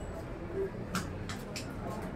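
Indistinct low murmur of spectators chatting around a pool table, with a few short, sharp hissing sounds in the second half.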